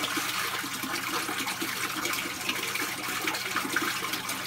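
Small waterfall in a reptile enclosure, water splashing steadily onto rocks.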